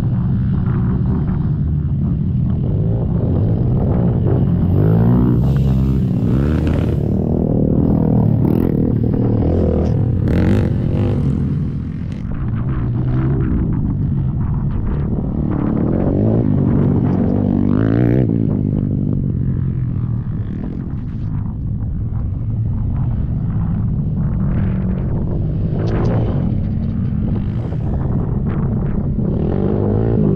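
Youth racing ATV engines revving hard as several quads climb a dirt trail and pass one after another. Their pitch rises and falls repeatedly with the throttle.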